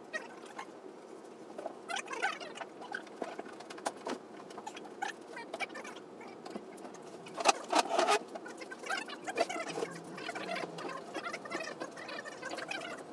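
Scattered light knocks, clicks and squeaks of hands and tools working on a grand piano from underneath, with a louder burst of clatter a little past halfway.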